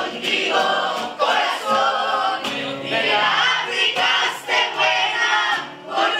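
Many voices singing a song together to a strummed acoustic guitar.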